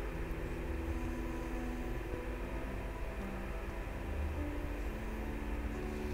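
A steady low hum with faint held tones underneath that shift now and then, and no sharp sounds.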